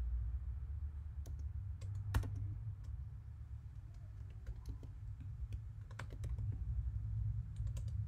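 Typing on a computer keyboard: irregular keystrokes with a sharper click a little past two seconds, over a steady low hum.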